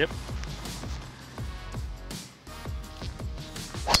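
Background music with a steady beat, a short laugh at the start. Just before the end comes one sharp crack: a driver striking a golf ball off the tee.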